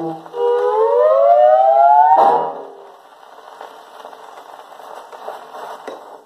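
The last note of a 1950s orchestra-and-vocal record, a long rising glide, ends on a sharp final chord about two seconds in. After it comes the quieter hiss and crackle of a shellac 78 rpm record's surface, played on a portable acoustic wind-up gramophone. The crackle stops just before the end.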